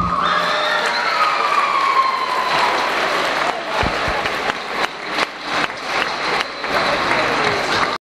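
A school audience of children cheering with a long high-pitched cheer that slowly falls in pitch, then clapping from about two and a half seconds in.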